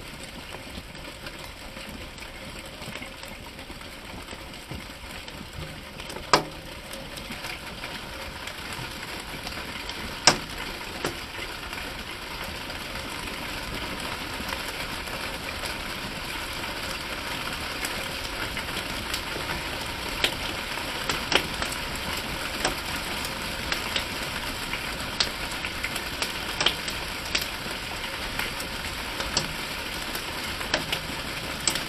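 Rain and hail falling, a steady hiss that slowly grows louder, broken by sharp cracks of single hailstones striking: two early on, then more often, about one a second, in the last ten seconds.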